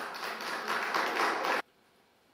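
Applause, a short burst of hand clapping that cuts off abruptly after about a second and a half.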